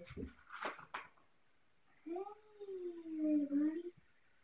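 A few light knocks, then one long drawn-out voiced call of about two seconds that rises and then slowly falls in pitch.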